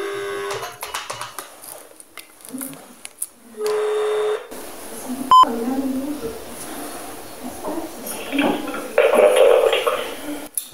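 Telephone ringback tone of an outgoing call waiting to be answered: two long beeps at one steady pitch, about four seconds apart. A short, higher beep follows about five seconds in.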